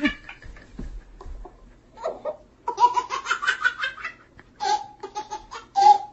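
Laughter in bursts: a short laugh at the start, then long runs of high, pitched laughing from about three seconds in and again near the end.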